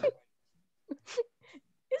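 A person's voice making a few short vocal sounds, a brief moan or laugh, about a second in, between lines of conversation heard over a video call; speech resumes near the end.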